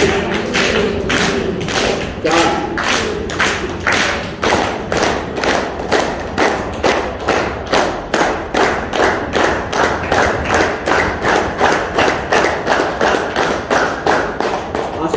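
Hand clapping in a steady rhythm, about three claps a second, kept up throughout as a clapping exercise.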